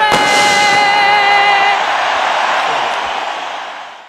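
A girl's singing voice, with others singing along, holds a long final note for about the first two seconds over a large crowd's loud cheering and applause. The cheering carries on after the note ends and fades away at the end.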